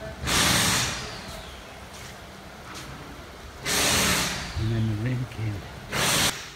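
Three short, loud puffs of breath on a hand-held phone's microphone, a few seconds apart. Shortly before the last one comes a brief low wordless hum from a man's voice.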